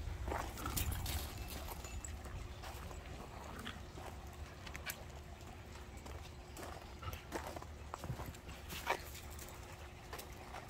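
Scattered light clicks and scuffs of dogs' claws and paws moving about on paving stones and gravel.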